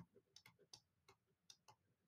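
Near silence with a few faint, short ticks from a stylus tapping on a tablet screen as numbers are handwritten.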